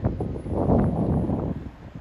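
Wind on the microphone, an uneven low noise that swells and fades in gusts.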